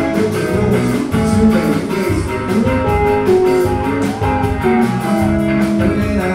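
Live rock band music: an electric guitar plays melodic lead lines of held, stepping notes over bass and a steady drum beat.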